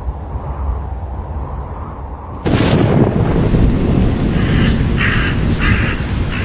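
Low rumbling ambience, broken about two and a half seconds in by a sudden loud crash that carries on as a steady, noisy roar. In the second half a bird calls three times over it.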